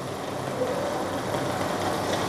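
Steady low background hum and noise with no distinct events.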